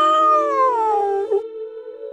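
A cat's long, loud meow in a logo sting, gliding down in pitch and ending about a second and a half in. A steady held tone sounds beneath it and carries on after it.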